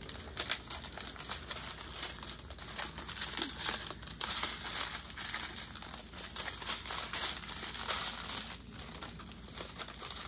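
Clear plastic bags of diamond-painting drills crinkling as they are handled and bundled together: a continuous run of small crackles.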